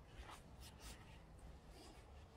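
Near silence with a few faint, brief rustles.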